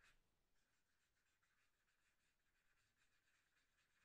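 Near silence, with very faint scratching of a felt-tip marker being stroked back and forth on paper while colouring in.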